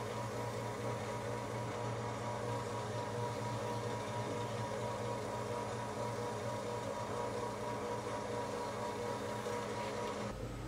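Wood lathe running at a steady speed, a constant motor hum with a few held tones, while a paper towel buffs wax onto the spinning wooden bottle stopper.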